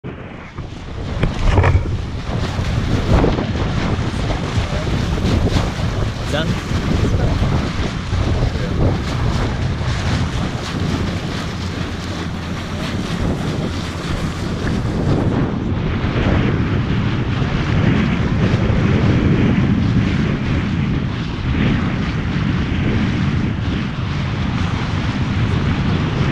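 Wind buffeting the microphone over rushing, splashing water as a boat moves across a lake.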